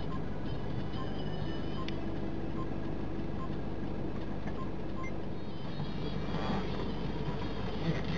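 Motor scooter engine running steadily as it rides through shallow floodwater, with a faint steady hum.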